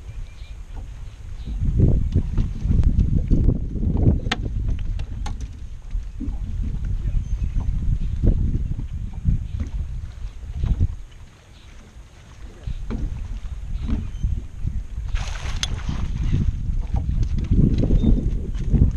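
Wind buffeting the microphone on an open boat, a low rumble that rises and falls in gusts and drops away briefly about eleven seconds in. A short rushing hiss comes about fifteen seconds in.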